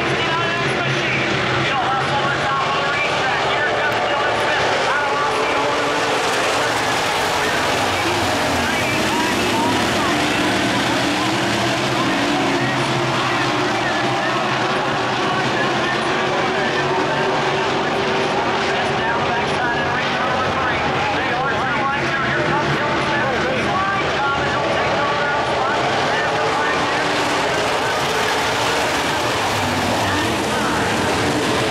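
A field of dirt-track modified race cars running laps together, several V8 engines revving up and down at once as the cars go into and out of the turns.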